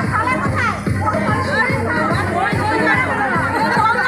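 Loud music with a quick, steady drum beat, and a crowd of voices shouting and chattering over it.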